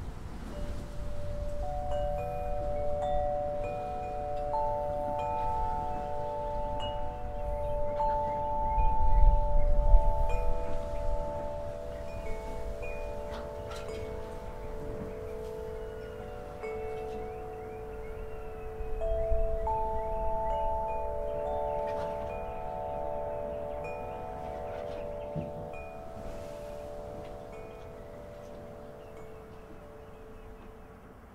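Wind chimes ringing in the wind: a few clear, long-ringing tones at different pitches, struck at uneven intervals and overlapping. Gusts of wind rumble on the microphone, strongest about ten seconds in and again around twenty, and the ringing fades toward the end.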